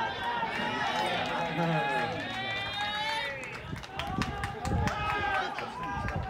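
Players' voices calling and shouting across a baseball field, with several low thumps and sharp clicks in the second half.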